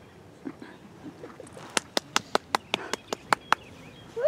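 One person clapping: about ten sharp, even claps, roughly five a second, starting a little before halfway through.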